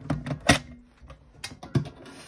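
Coins clicking against each other and the coin tray of a metal cash box, then the box's metal lid shut with a clack near the end. A string of separate sharp clicks, the loudest about half a second in.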